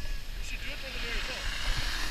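Snowboard scraping across packed snow as the rider slows to a stop. It is a hiss that swells about half a second in and fades near the end, over a low rumble of wind on the microphone.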